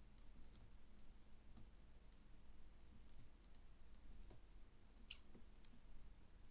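Faint, scattered computer mouse clicks in a quiet room, the sharpest one near the end.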